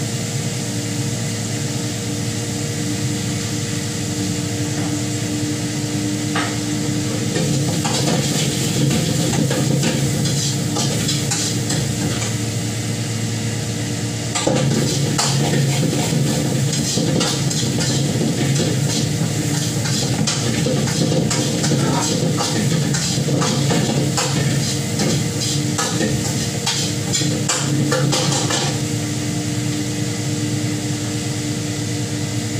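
Wok stir-frying over a high gas flame: a metal spatula scraping and clattering in the wok amid sizzling, busiest from about a quarter of the way in and louder from about halfway, over a steady kitchen hum.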